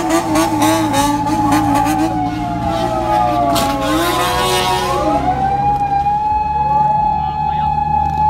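Police car sirens wailing, their pitch sliding slowly down and then rising again about halfway through, over the steady running of car and motorcycle engines. A wavering tone runs through the first half.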